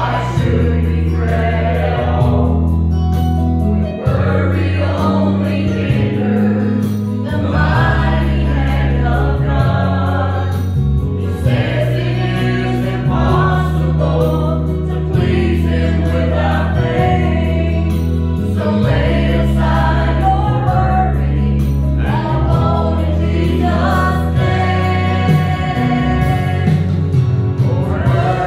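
A small mixed group of men and women singing a gospel song together, over instrumental accompaniment with a strong bass line that changes note every second or two.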